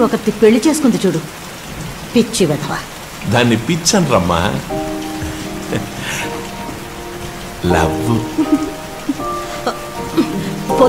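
Film soundtrack: short bursts of spoken dialogue over a steady hiss, with background-score music holding a sustained chord from about five seconds in.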